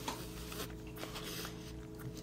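Steady low hum with faint clicks and two short soft rustles, handling noise from a phone held at arm's length.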